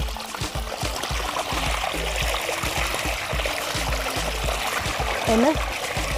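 Water gushing and splashing out of a burst supply tank into a shallow ditch as a vegetable is rinsed in the flow, with background music over it.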